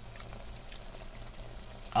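Chicken drumsticks in broth simmering in an aluminium pot: a steady, soft bubbling with a faint low hum underneath.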